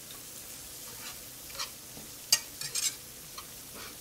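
Flour, onion, celery and garlic sizzling in butter in a nonstick skillet while a wire whisk stirs them, with a few light scrapes and taps of the whisk against the pan. The flour is being cooked in the fat to thicken the sauce.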